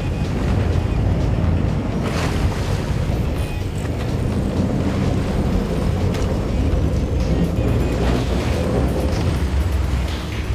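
A boat's engine running with a steady rush of wind and sea, with background music laid over it.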